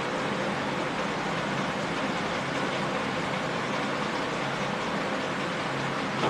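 Steady, even background noise with no distinct events: room noise such as a fan or distant traffic. Any sound of the marker on the whiteboard is not distinguishable above it.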